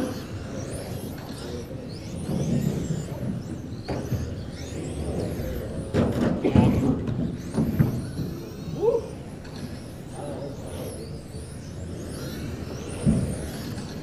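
Electric 1/10-scale RC touring cars racing on a carpet track, their motors whining up and down in pitch as they accelerate and brake through the corners. A few louder knocks come about four and six to seven seconds in.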